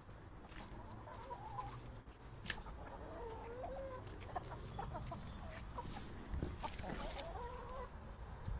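Chickens clucking, with drawn-out, wavering calls about a second in, in the middle, and again near the end.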